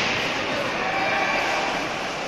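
Ice hockey play in an indoor rink: steady scraping of skate blades on the ice with faint shouts from players and spectators carrying through the hall.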